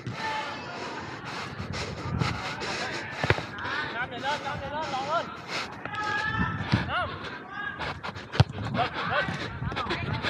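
Live pitch sound of a small-sided football match on artificial turf: players' voices calling out across the pitch. Two sharp ball strikes stand out, one about a third of the way in and a louder one near the end.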